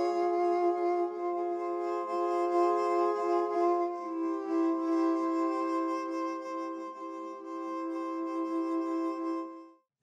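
Sampled solo viola playing muted (con sordino) bow pulses: held notes of a chord that swell and ebb in soft pulses. The chord changes about four seconds in, and the sound stops just before the end.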